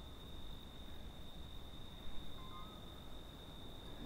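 Quiet ambience with a faint, steady high-pitched whine and two brief faint chirps a little past two seconds in.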